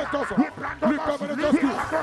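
A man's voice chanting fervent prayer into a microphone in rapid, short repeated syllables.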